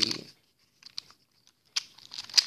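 A few faint, short clicks and taps of objects being handled, in an otherwise quiet small room.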